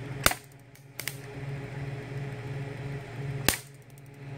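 High-voltage arc cracking across a screwdriver-tip spark gap fed by a Ruhmkorff induction coil and microwave-oven transformer: three sharp snaps, one just after the start, one about a second in, and a much louder arc near the end. A steady electrical buzz from the running coil sits underneath.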